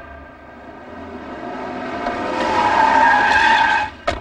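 A vehicle with a tyre squeal that grows steadily louder over the second half and cuts off sharply at the end.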